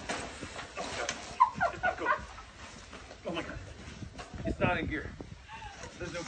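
People's voices: short, indistinct vocal sounds and exclamations in a few bursts, the longest about four and a half seconds in, with a couple of faint clicks early on.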